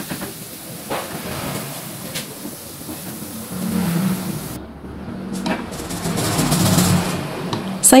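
Sausage slices sizzling in hot frying oil while they are scooped out with a wire mesh strainer, with a couple of light clicks of metal against the pan early on. The sizzle drops away briefly around the middle.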